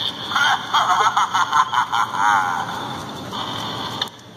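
A tinny recorded voice from the small speaker of an animated pirate skeleton Halloween prop, laughing in a quick run of repeated 'ha's with a wavering held note about two seconds in, then trailing off more faintly until it cuts off suddenly.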